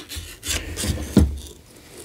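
Handling noise: a small FPV drone being turned over in the hands, its carbon-fibre frame and propellers rubbing, with a few short scrapes.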